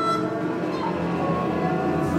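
Jazz big band of trombones, trumpets and saxophones holding a dense cluster of sustained notes together in a free improvisation.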